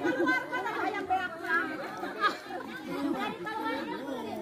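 Crowd chatter: many people talking and calling out at once.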